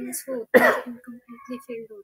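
A person clears their throat with a short, harsh cough about half a second in, the loudest sound here, amid low, indistinct speech.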